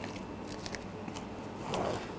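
Plastic cling film crackling faintly, with a few small scattered clicks, as it is drawn over a tray and torn from its roll.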